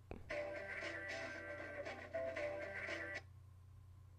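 Adobe Connect's built-in speaker test sound: a short, fairly quiet musical clip of about three seconds. It starts just after a mouse click and cuts off suddenly. Hearing it confirms the computer's speakers are set up properly.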